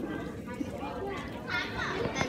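Children's voices chattering at low level, with a clearer high-pitched child's voice near the end.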